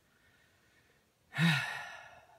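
A person's heavy sigh of frustration about 1.4 s in, a short voiced start trailing off into a long breathy exhale.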